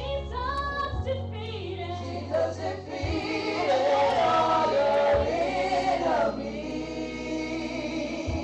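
Women's gospel praise team singing into microphones through a sound system, a lead voice with others joining, over a low bass accompaniment that changes note every couple of seconds. The singing swells to its loudest in a held phrase through the middle.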